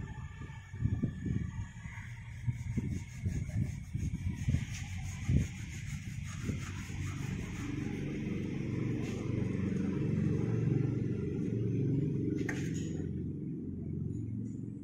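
A steel strike-off bar scraped and knocked across rammed moulding sand in a moulding box, levelling off the excess sand. The first half has irregular scrapes and knocks; from about halfway a steady low rumble takes over.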